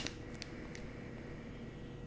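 Quiet room tone: a low steady hum with a couple of faint small clicks.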